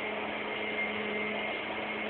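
Steady background hiss with a faint constant hum underneath, and no distinct sounds.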